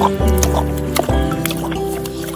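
Background music of held instrumental notes, over a tiger lapping water from a tub: irregular wet splashes, about one every half second.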